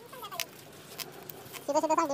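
A goat bleating loudly, starting near the end in a steady-pitched, wavering call broken into short pulses. Before it, a few light clicks and rustles.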